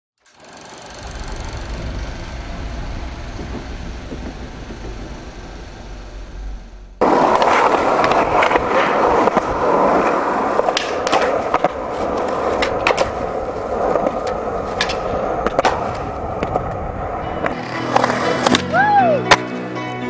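Skateboard wheels rolling on concrete: first a steady rumble, then from about seven seconds in a louder, rougher roll with repeated sharp clacks of the board popping and landing. Music comes in near the end.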